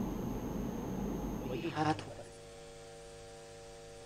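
Low background hiss, then a brief snatch of a voice about two seconds in, followed by a faint steady electrical mains hum, a buzz of evenly spaced tones, on the live event's audio feed.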